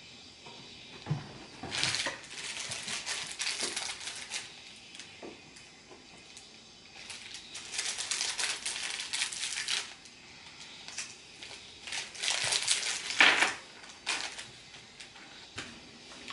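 Plastic packaging being crinkled and handled in three bouts of crackly clicking, each a second or more long.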